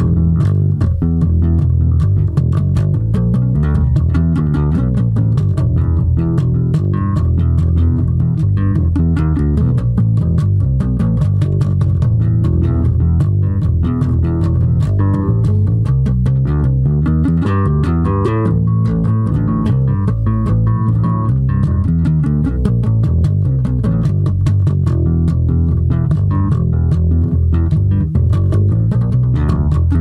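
Yamaha electric bass guitar played solo: a continuous stream of quick plucked notes with no pauses, a metal bass line played through at full tempo.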